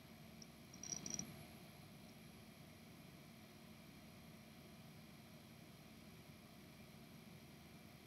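Near silence: faint room tone, with a few faint clicks about a second in.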